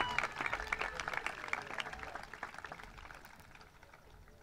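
Audience applauding a graduate, the claps thinning out and fading away toward the end.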